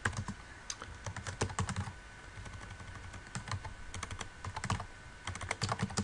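Typing on a computer keyboard: runs of quick keystrokes, with a lull of about a second roughly two seconds in before the clicking picks up again.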